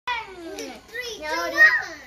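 A young girl's voice in short high-pitched phrases, loudest about one and a half seconds in.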